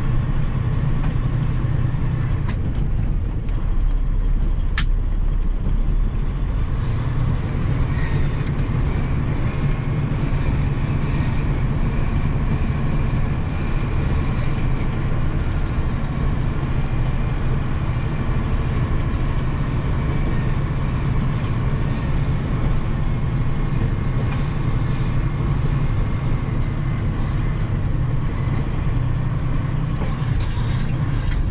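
Kenworth T800 dump truck's diesel engine running steadily, heard from inside the cab as it rolls slowly over a dirt site, with one short sharp click about five seconds in.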